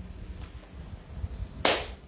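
A pause in speech with low room rumble. Near the end comes one short, sharp hissing mouth noise from the speaker, a quick breath just before she speaks again.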